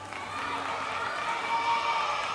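Audience cheering and calling out in response, several high voices overlapping over a faint background of crowd noise.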